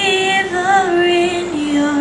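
A young woman singing solo into a microphone, holding long notes that step down in pitch.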